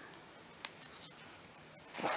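Quiet paper handling of a printed workbook: one light tick about two-thirds of a second in, and a page of the guide starting to turn at the very end.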